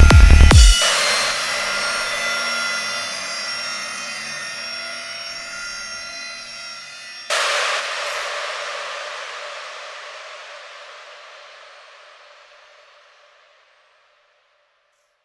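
The outro of a dark psytrance track: the kick drum and bass stop less than a second in, leaving a fading wash of reverberant synth texture. About seven seconds in, a single sudden noisy hit rings out and slowly decays to silence near the end.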